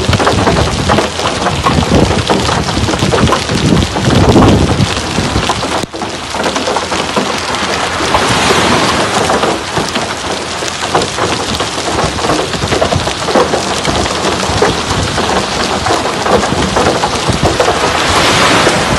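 Heavy rain pouring down steadily, loud, with a dense patter of drops landing close to the microphone. A deeper rumble sits under it for the first five seconds or so.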